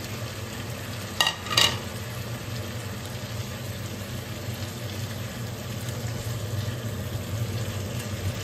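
A spatula stirring boiled potato pieces into a sizzling tomato masala in a kadhai, with two quick knocks of the spatula against the pan a little over a second in.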